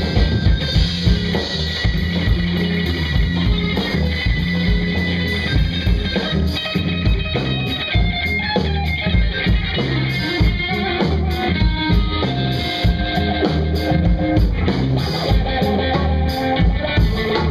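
Live rock band playing loud and steady: electric guitar, bass guitar and drum kit, with no singing.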